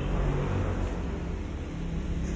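Steady low background rumble with a faint hiss, unchanging through the pause.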